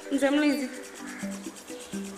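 Background film score of held, sustained notes that stop and restart. A short voiced cry or word rises over it just after the start.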